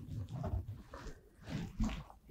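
Faint, irregular handling noises: soft knocks and shuffles of things being moved on a tabletop, with a slightly sharper knock near the end.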